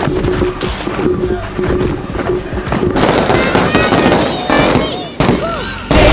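Fireworks crackling and popping, with shouting voices and music mixed in.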